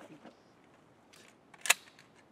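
Pump-action shotgun being handled and its slide racked: faint rustling and small ticks, then one sharp metallic clack about one and a half seconds in as the action cycles a shell into the chamber.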